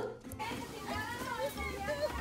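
Faint background voices of children and adults talking and playing at a distance, with no one speaking close by.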